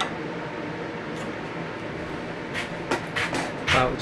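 Steady hum of a workshop air scrubber running, with a few light clicks near the end as the calipers are worked against the table saw's riving knife and blade.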